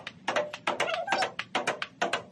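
A table tennis ball rallied against the upright half of a table: sharp clicks of paddle hits and table bounces come in a quick, steady rhythm of several a second. A short pitched sound comes about a second in.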